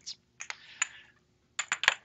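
Small sample jars being handled on a bench: a couple of light clicks about half a second in, then a quick run of four or five clicks near the end as jars knock against each other and the bench top.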